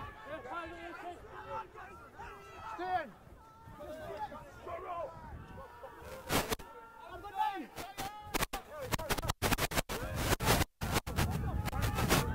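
Scattered voices shouting and calling across an outdoor rugby pitch. In the last few seconds, a quick series of sharp knocks or crackles joins them.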